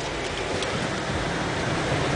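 Steady road and engine noise inside the cabin of a moving car, an even rushing hiss.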